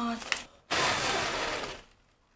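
A person blowing a long breath at a foil toy pinwheel, a breathy rush about a second long that fades out.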